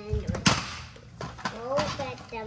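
A young child's voice vocalising without clear words, with one loud sharp knock about half a second in.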